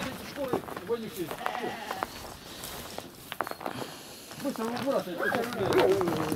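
Sheep bleating, with some people's voices mixed in.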